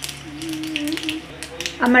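Panch phoron spice seeds sizzling in hot oil in an iron kadhai, with a few sparse crackles as the tempering settles.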